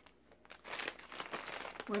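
Plastic snack bags crinkling as they are handled, a dense, irregular crackle that starts about half a second in.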